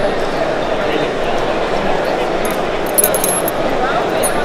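Light metallic clinks and jingles from a metal ring and a small metal piece hanging on it being handled, in a few quick bursts in the second half. The clinks sit over steady crowd chatter.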